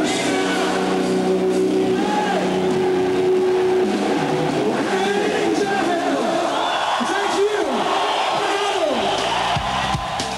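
Live rock band holding a final chord, which gives way after about four seconds to shouting and cheering from the crowd.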